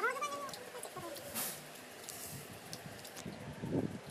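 A brief high-pitched call at the very start, sliding in pitch over about half a second, followed by a short rustle and faint low sounds.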